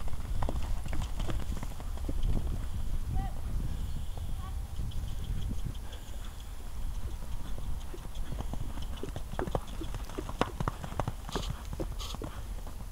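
A 13hh pony's hooves drumming on soft turf at a canter as it weaves through bending poles, the hoofbeats growing sharper and more distinct near the end, over a steady low rumble.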